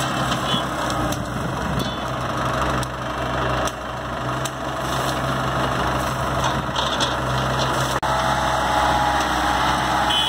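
A farm tractor's diesel engine runs steadily at a low hum while it hauls a cart loaded with sugarcane. A few short, sharp knocks sound now and then.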